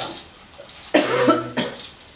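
A man's short cough about a second in, sudden and loud.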